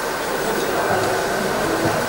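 Steady room noise of an event hall picked up through the stage microphone: an even hiss with a faint, high, steady tone and no speech.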